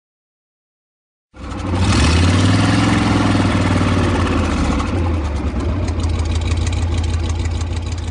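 Silence, then about one and a half seconds in a loud vehicle engine starts running, revs up and back down once, and keeps running with a strong low rumble.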